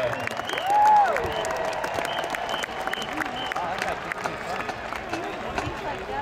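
Stadium crowd applauding and cheering at the end of a marching band's halftime show. Scattered shouting voices ride over the clapping, with one loud shout about a second in.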